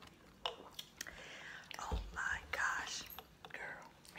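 Close-up chewing and mouth sounds of someone eating battered, deep-fried food, with scattered soft clicks and a low thump about halfway through.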